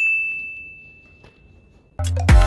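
A single high, clear chime: one bell-like ding that rings out and fades away over about two seconds.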